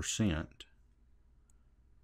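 The tail of a man's spoken word, followed about half a second in by a single short click, then quiet room tone.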